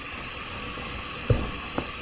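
Two short clicks, the first about a second in and a fainter one half a second later, over a steady low hiss of room and microphone noise.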